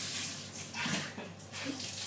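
A child sniffing a jelly bean held to his nose: a few short, noisy breaths in through the nose as he tries to smell its flavour.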